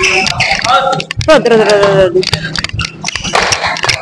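Badminton rally: sharp, repeated cracks of rackets hitting the shuttlecock, mixed with players' voices calling out in a reverberant hall.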